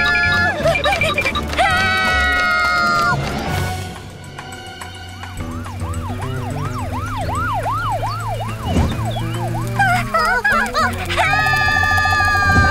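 Cartoon characters screaming in two long held cries, then a cartoon police siren wailing in quick rising-and-falling sweeps, about two or three a second, for several seconds, and another held scream near the end.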